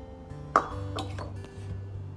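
Background music, with one sharp clink about half a second in: a plastic funnel knocked against the neck of a glass bottle.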